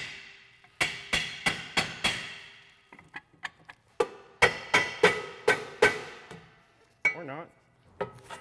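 A hammer striking a rusty rear brake drum to knock it loose, two runs of about five or six quick, ringing blows, roughly three a second. The drum is stuck because the brake shoe has worn a groove and lip into it.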